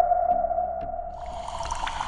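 Synthesized logo-sting sound design: one steady held tone that slowly fades, joined about a second in by a higher shimmering layer with light scattered clicks.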